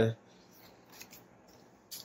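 Faint handling of a tarot card as it is picked up from the table: a soft papery click about a second in and another just before the end.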